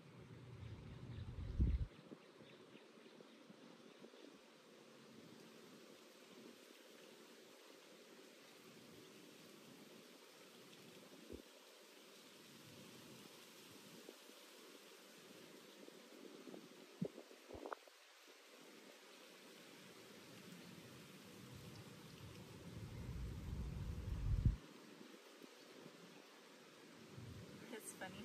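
Quiet outdoor ambience with wind buffeting the microphone in two low rumbling gusts, one in the first two seconds and one building near the end, and a few faint clicks in between.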